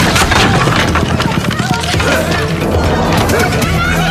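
Soundtrack music under several people's raised voices overlapping in a jostling crowd.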